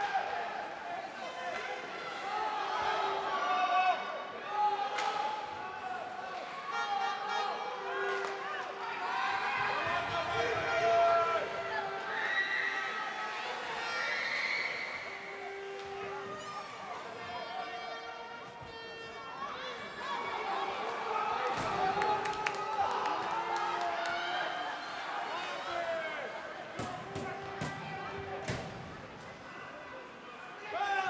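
Ice hockey play heard in a rink: players' indistinct shouts and calls echo through the hall, with sharp clicks of sticks and puck on the ice, more of them in the second half.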